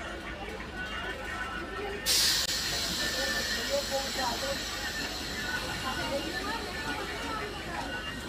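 Train noise at a station with people talking in the background, and a sudden loud hiss about two seconds in that fades over the next few seconds.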